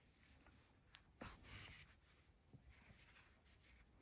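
Near silence, with faint rustles and small clicks from a yarn needle and yarn being drawn through crocheted fabric. The clearest is a brief scratchy rustle a little over a second in.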